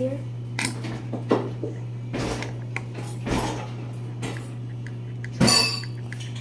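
Scattered knocks and light clinks from an aerosol can of shaving gel and a plastic cup being handled on a wooden table, with a louder clatter near the end, over a steady low hum.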